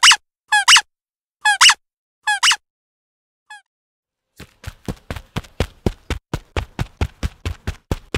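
Four pairs of short, high-pitched squeaks in the first half. From a little past halfway comes a fast, even run of sharp knocks, about five a second.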